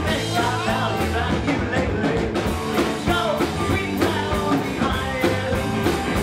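Live rock band playing a song at full volume: guitars and drums with a steady beat.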